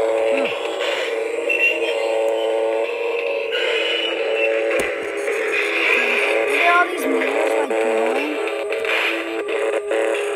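Spirit Halloween High Voltage haunted-machine prop playing its electronic soundtrack through its built-in speaker: a sustained synthetic drone of several steady tones, with a wavering, voice-like sound gliding low beneath it twice and a few sharp clicks.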